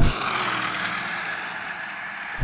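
Twin-turbo V8 performance cars at full throttle in a standing-start drag race, led by an Audi RS7 Performance, heard just after passing and pulling away. The engine and tyre noise fades steadily as they recede.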